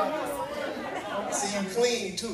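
Speech: voices talking, with chatter in a large room.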